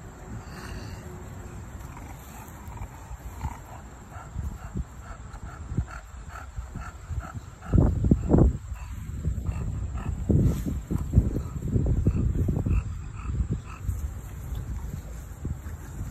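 English bulldog puppy snorting and grunting, with faint insects chirping at an even pace behind. From about eight seconds in, louder rough low rumbling noise comes and goes.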